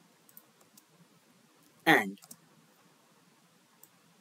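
A few faint computer keyboard keystrokes: a quick cluster of clicks in the first second and a single click near the end.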